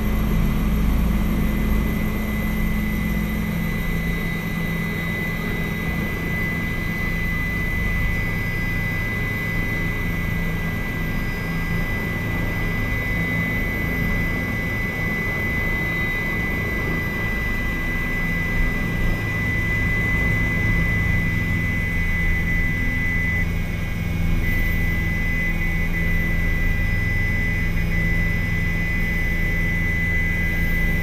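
Helicopter heard from inside the cabin as it lifts off and climbs: a steady engine and rotor drone with a constant high whine over it, getting a little louder in the last few seconds.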